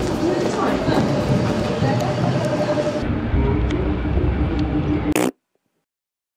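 Busy street noise with indistinct voices and a steady low hum from traffic, cut off abruptly just over five seconds in and followed by silence.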